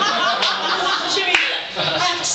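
Audience clapping, mixed with voices.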